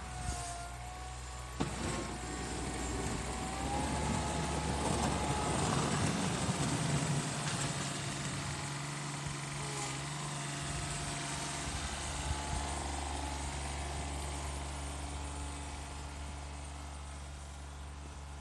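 John Deere F935 front mower's diesel engine running as the machine drives by, growing loudest a few seconds in and then easing back to a steady drone. A thin whine rises in pitch over the first few seconds, and a couple of sharp knocks come near the start.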